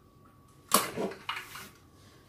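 Small handling sounds at a plastic mixing bowl on a kitchen counter: a sharp click about three-quarters of a second in, then a few softer taps and rustles.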